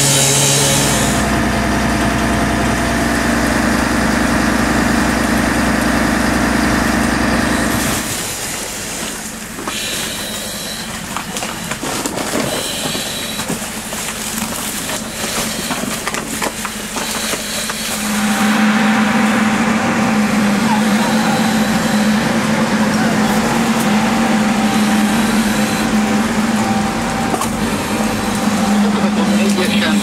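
Angle grinder cutting through a metal door, stopping about a second in. After it comes a steady machine hum that changes character at about 8 s and again at about 18 s, with some voices.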